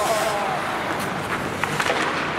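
Ice hockey play in an indoor rink: a steady scrape and rush of skates on the ice, with several sharp clacks of sticks and puck in the second half and a short call from a voice at the start.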